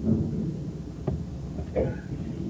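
Low, steady rumbling background noise in a lecture room, with a single sharp knock about a second in and a brief murmur of a voice near the end.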